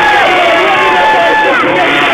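Crowd of spectators cheering and shouting, many voices at once, in response to a freestyle motocross jump.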